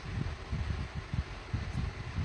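Faint, irregular low handling noise: small bumps and rumble from hands working a crochet piece and yarn at a table.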